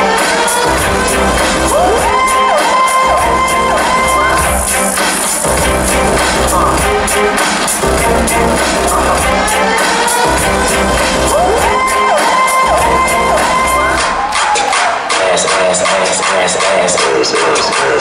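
Hip hop dance routine music playing loud, with a heavy bass beat that drops out and comes back in short blocks and rising synth swoops twice, with some crowd cheering.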